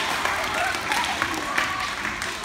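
A crowd of schoolchildren chattering in a large hall, with scattered clapping as a round of applause dies away.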